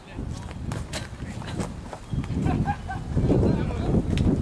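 Wind buffeting the camera microphone: a low, uneven rumble that grows louder in the second half.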